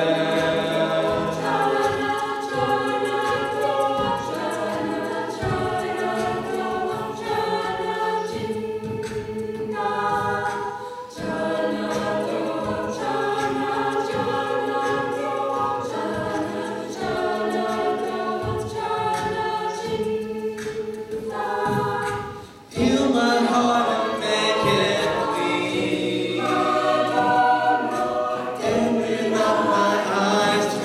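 Mixed male and female a cappella group singing a worship song, a male lead voice over sustained backing chords from the group. About 22 seconds in, the sound briefly thins and drops, and the full group then comes back in louder.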